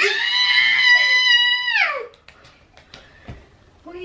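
A young child's high-pitched scream in play, held steady for about two seconds and dropping in pitch as it ends, followed by a few faint knocks.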